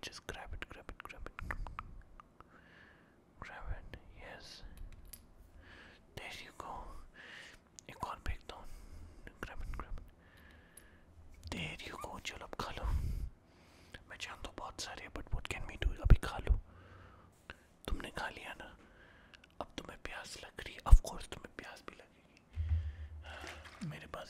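Soft whispering close to the microphone, broken up by irregular clicks and handling noises. There is one sharp knock about 21 seconds in.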